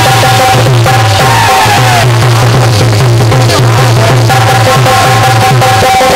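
Loud live Indian folk-devotional music: a harmonium holding long notes over a steady drum beat, played through a PA system.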